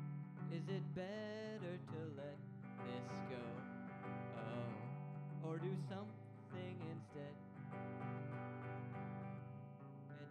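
Hollow-body electric guitar strummed through a slow song, with a man singing held, wavering notes over it in places.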